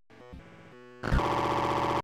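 Corrupted one-second MP3 tracks playing back to back as glitch noise. First comes a quiet stretch of stacked electronic tones. About a second in, the next track starts much louder with a harsh, fluttering buzz, and it cuts off abruptly.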